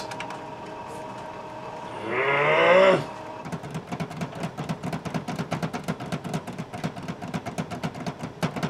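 Canon imagePROGRAF Pro-1000 photo printer working without feeding the card: a steady whine at first, then fast, even ticking, about seven or eight clicks a second, from about three seconds in. A person groans once, about two seconds in.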